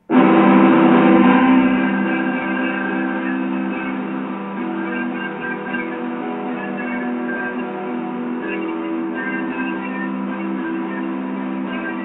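Instrumental music: a sustained chord comes in suddenly, loudest for the first second or so, then holds steady with notes changing over it.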